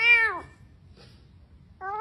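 A kitten trapped down a floor drain meowing: one loud, arching meow at the start lasting about half a second, then a second meow beginning near the end.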